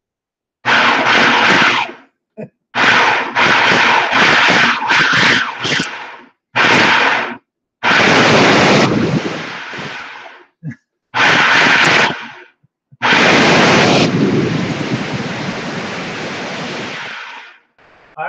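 Countertop blender puréeing tomatoes, its motor switched on and off in a run of short pulses and longer bursts. The last burst is the longest, about four and a half seconds.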